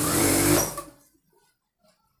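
Industrial single-needle sewing machine stitching a blue fabric strip for piping. It runs steadily, then slows and stops about a second in.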